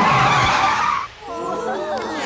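Cartoon sound effect of a scooter skidding to a stop, a hissing screech that cuts off about a second in. After it, several voices talk over one another.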